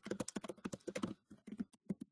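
Typing on a computer keyboard: a quick, irregular run of key clicks that thins out after about a second.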